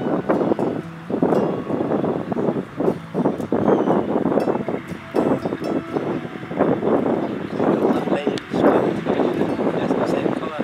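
Indistinct talking from several people, with no clear words.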